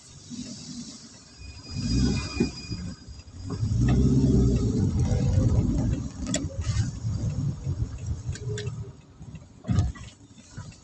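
Ambulance engine running, heard from inside the cab as it drives in at low speed. It grows louder for about two seconds near the middle, then eases off.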